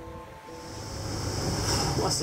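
Rush of water and wind as an IMOCA racing yacht sails fast through the waves, growing louder toward the end, with music underneath.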